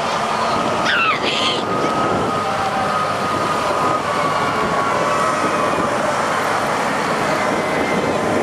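Pickup trucks towing hay wagons rolling slowly past, engines running under a steady wash of noise, with faint held tones through it and a brief falling cry about a second in.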